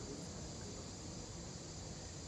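Faint, steady background noise with thin, high-pitched steady tones running through it, and no other events.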